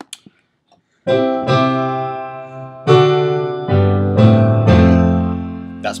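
Grand Piano software instrument played from a digital keyboard over USB MIDI. From about a second in, a run of about six chords and deep bass notes is struck. Each rings on under the sustain so they overlap and keep sounding.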